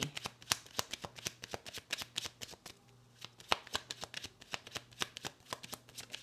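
A tarot deck being shuffled by hand, the cards snapping and rustling in a quick, uneven run of clicks that thins out briefly about halfway through.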